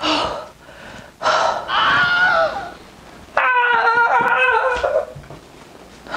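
A woman's exaggerated heavy breathing and gasps, with a breathy groan and then a drawn-out, high-pitched whining moan starting about three and a half seconds in.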